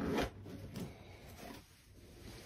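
Fabric backpack being handled: a brief loud zipper-like rasp right at the start, then fading rustles.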